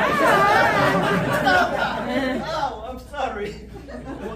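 Several voices talking over one another, unclear enough that no words can be made out; loudest in the first two and a half seconds, then dying down.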